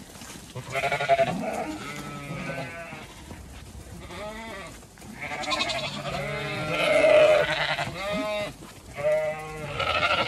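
A flock of Zwartbles ewes and lambs bleating: a run of overlapping calls, some deep and some high, loudest about seven seconds in.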